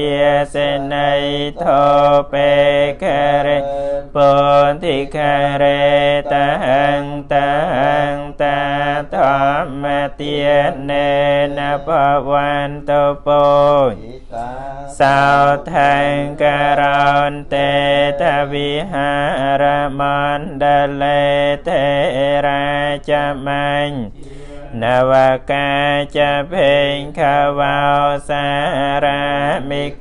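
Buddhist monks chanting in Pali: a rapid recitation on a nearly unchanging low pitch, with brief pauses for breath about 14 and 24 seconds in.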